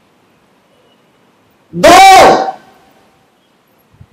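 A man's voice says one drawn-out word, "दो", in the middle. Faint room hiss comes before and after it.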